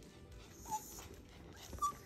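Shih Tzu whimpering twice, short high squeaks, begging for attention, over soft background music.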